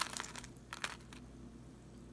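A few short crackling clicks of small things being handled on the table in the first second or so, then quiet room tone.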